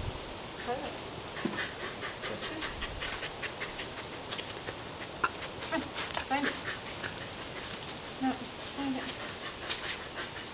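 A scent-detection dog searching for anise odor: many quick sniffs and scuffling clicks, with a few brief low vocal sounds about six seconds in and again near the end.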